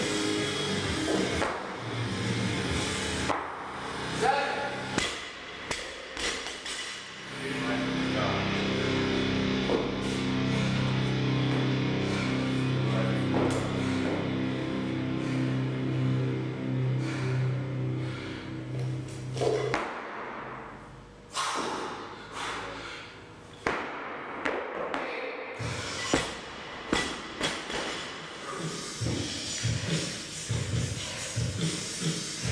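Music playing, with occasional heavy thuds of a loaded barbell with bumper plates being set down on the lifting platform.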